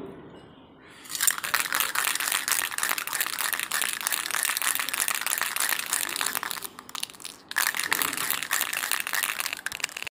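Aerosol spray-paint can spraying paint onto a plastic car bumper: a long hiss starting about a second in, a short break, then a second shorter burst that stops near the end.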